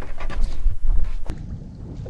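Wind buffeting the microphone over choppy water, with water lapping and sloshing at the boat's side. About a second in, the sound drops quieter.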